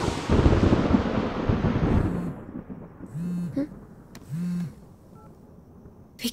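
A thunderclap at the start that rumbles and fades away over about two seconds. Then a mobile phone buzzes twice, each buzz about half a second long.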